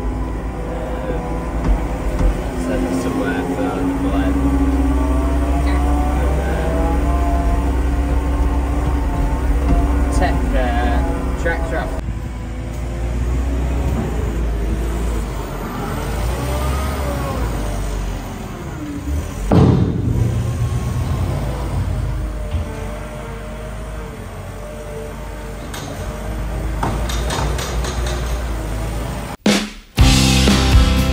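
A background song with vocals over the low, steady running of a Kramer wheel loader's diesel engine, with a single loud knock about two-thirds of the way through.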